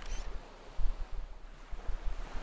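Ocean surf and wind ambience: a steady rushing of waves with a few low gusts.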